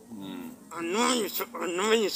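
A man's voice speaking, with one long drawn-out vowel near the middle.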